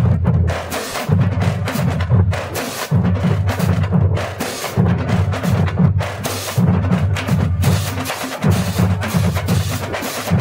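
Marching drumline playing: rapid tenor-drum (quint) strokes and cymbal crashes over deep, pitched drum notes, in a continuous driving rhythm.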